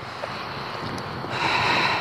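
Wind on the camera microphone outdoors in wet weather, an even hiss that swells louder about a second and a half in.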